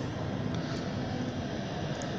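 Steady outdoor background noise: an even, low rush with no distinct event standing out.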